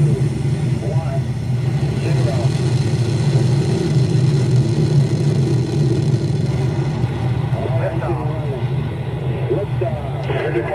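Rocket launch recording: the loud, steady low rumble of rocket engines at liftoff, with a launch commentator's voice coming through it now and then.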